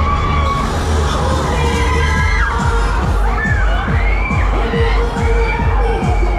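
Riders on a spinning fairground ride shrieking and cheering over loud dance music from the ride's sound system. The music is bass-heavy, and a fast thumping kick-drum beat, about three beats a second, comes in about halfway through.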